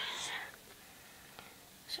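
A short breathy, whispered sound from a person, then quiet with a faint click about a second and a half in.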